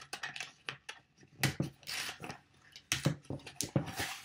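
Hands unwrapping a gift box: paper and cardboard packaging rustling in short bursts, with scattered small clicks and knocks.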